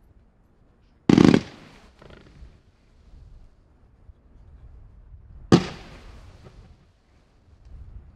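Professional F3 fireworks (a Sunglow Strobe effect) firing: two loud bangs, one about a second in and one about five and a half seconds in, with fainter uneven crackling between them.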